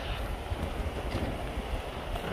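Rushing water of a shallow, rocky mountain stream, with wind buffeting the microphone in uneven gusts underneath.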